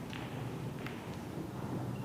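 A pool shot in nine-ball: the cue tip strikes the cue ball, then a sharper click about three-quarters of a second later as it hits the object ball, over a low steady background hum.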